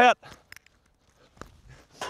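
A faint sharp crack of a hurley striking a sliotar about half a second in, followed nearly a second later by another faint knock.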